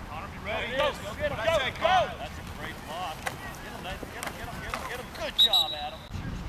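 Sideline spectators yelling and cheering over one another while a play runs, with a few sharp knocks. Near the end a referee's whistle sounds once briefly, stopping the play after the tackle.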